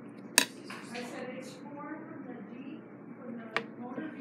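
Two sharp clicks of something hard being handled, the first loud one just after the start and a smaller one near the end, with a child's faint murmuring between them.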